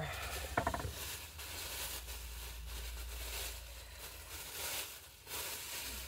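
Plastic bag rustling and crinkling as it is pulled out and handled, over a low steady hum.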